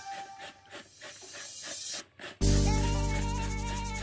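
Background music cuts out for about two seconds, leaving quiet, quick rasping strokes of a chayote being grated on a metal box grater; then loud music with held chords comes back in.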